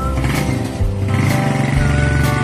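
Background music: a melody over bass notes, with a steady beat of about one stroke a second.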